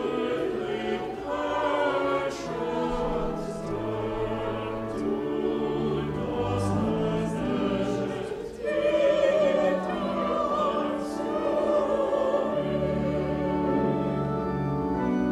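Church choir singing an anthem in parts over sustained organ chords, the held notes changing every second or so. The music dips briefly about eight seconds in, then comes back louder.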